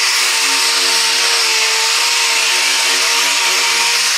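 Air-powered dual-action finish sander running at high speed with a 2,000-grit foam pad, wet sanding clear coat. It makes a steady hissing whine with a constant hum under it.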